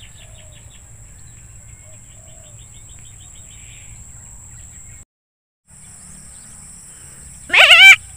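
Outdoor scrub ambience: a high, steady insect drone with faint bird chirps. Near the end a sudden loud call with a wavering, trembling pitch, from water buffalo.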